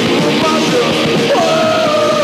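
Rock song with a singing voice over a full band, played back from a cassette taped off FM radio. A long held vocal note begins near the end.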